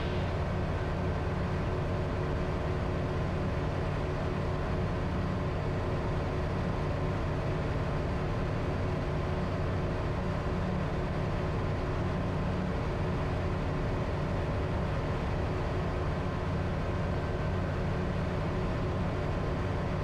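Comco Ikarus C42C ultralight's engine and propeller droning steadily in cruise flight.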